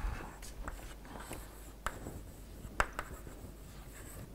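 Chalk writing on a blackboard: faint scratching of the chalk punctuated by sharp taps as it strikes the board, the loudest about two seconds in and again near three seconds.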